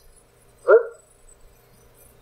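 A man saying a single word, "eight", over faint room tone with a steady low hum.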